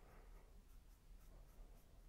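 Faint sound of a paintbrush stroking and dabbing acrylic paint on canvas, otherwise near silence.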